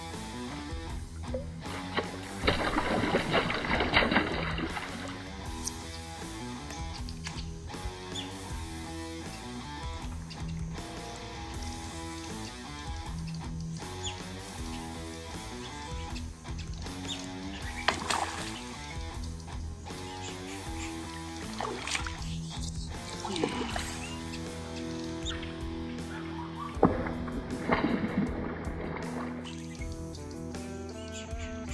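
Background music, with a few brief noisy bursts over it, the longest about three seconds in.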